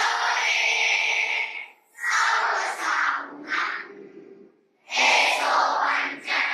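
Girls' voices singing into a hand-held microphone and heard over the hall's loudspeakers, in phrases broken by short pauses.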